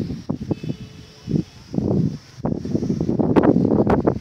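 Wind buffeting the phone's microphone in irregular low gusts, growing louder and more continuous about halfway through.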